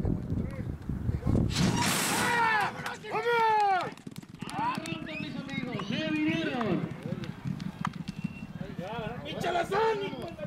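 Men shouting and yelling in high, drawn-out calls as two racehorses break from the starting gate and gallop off, with a loud clatter about two seconds in.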